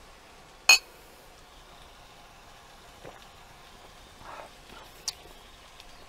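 A single clink of two small drinking glasses, a sharp click with a short bright ring, under a second in. Afterwards there is only quiet background with a faint small click or two.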